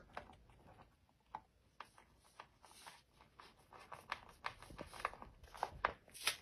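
Faint, scattered clicks and scrapes of a screwdriver driving a small cam screw into a pilot hole in an MDF panel, coming more often in the last two seconds.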